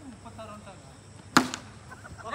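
A single sharp crack of a cricket bat striking the ball about one and a half seconds in, followed closely by a smaller tick. Faint voices are heard before it.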